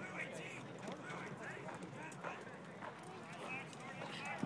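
Distant voices of football players and coaches calling and talking across an open practice field. Scattered short knocks are mixed in.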